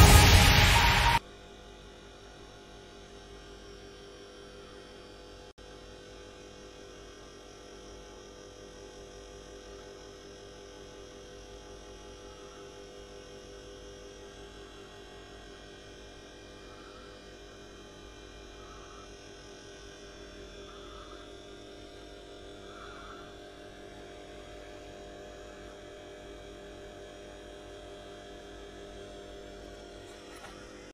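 Electronic dance music cuts off abruptly about a second in, leaving a faint, steady electrical hum.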